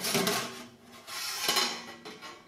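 Stainless steel door of a Klarstein Diavolo portable pizza oven being unhooked and swung down open: two metallic scraping clatters, the second starting sharply about a second and a half in.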